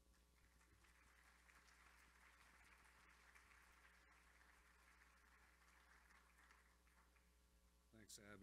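Near silence: faint room tone with a steady low hum and a couple of faint clicks.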